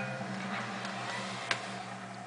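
Steady low hum over a faint hiss, with a single small click about one and a half seconds in.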